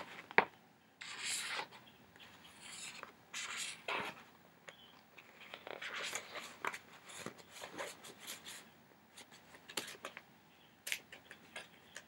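Paper cover insert and plastic DVD case being handled: irregular rustling, sliding and scraping as the insert is put back into the case, with scattered small clicks of the plastic.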